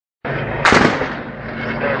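Gunfire in a war zone: one loud, sharp shot a little over half a second in, with a short ringing tail, over a steady noisy background.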